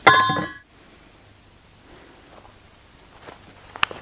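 Faint insect chirping, a high pulsing trill repeating several times a second, over quiet outdoor ambience. A couple of short sharp clicks come near the end.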